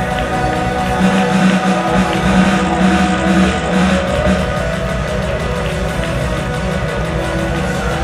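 Live band music played through a concert PA: held chords over a steady low bass line, with no singing.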